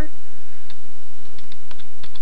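A few light computer keyboard keystrokes, clustered in the second half, as highlighted text is deleted in a text editor.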